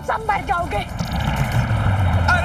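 Brief voices, then about a second in the rushing roar of a jet airliner's engines sets in, with a deep rumble underneath.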